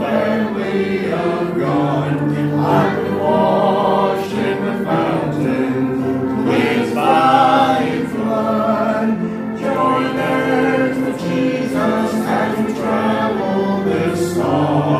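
Church congregation singing a hymn together, many voices on long held notes.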